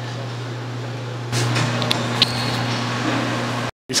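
Steady low hum and background noise in a large gym. The noise steps up about a second in, with a couple of faint clinks, and drops out briefly just before the end.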